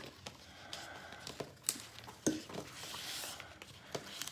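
Heat transfer vinyl being weeded by hand: excess vinyl peeling off the carrier sheet and the scraps crinkling, faint, with a few light ticks and a soft rustle about three seconds in.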